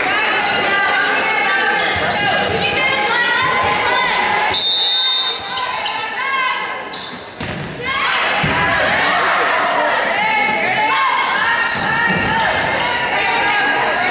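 Players and spectators calling out in an echoing gymnasium, with a single short referee's whistle blast about four and a half seconds in and occasional thumps of a ball.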